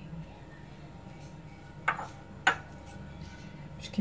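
Two light, sharp clinks on a glass baking dish, about half a second apart, as shrimp and vegetables are arranged in it by hand.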